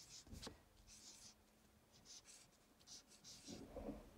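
Dry-erase marker writing on a whiteboard: a few faint, short scratchy strokes, with one sharp click about half a second in.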